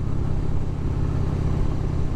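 2001 Harley-Davidson Heritage Softail's Twin Cam V-twin engine running steadily while cruising at an even speed, with road and wind noise.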